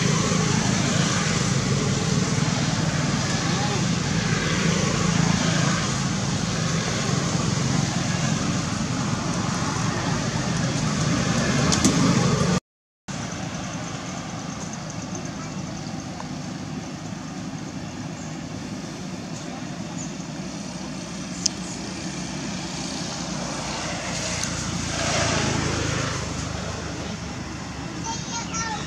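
Outdoor background noise of indistinct voices and road traffic, with a vehicle passing about three-quarters of the way through. The sound cuts out completely for a moment about halfway through.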